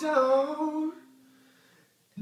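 Man singing a held note that falls in pitch over ringing acoustic guitar, both fading away about a second in to a pause of near silence.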